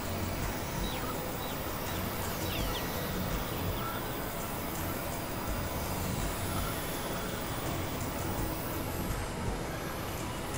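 Dense experimental noise and drone music, several tracks layered into one steady wash of low rumble and hiss, with a few short whistling glides about a second or two in. It sounds much like a passing train.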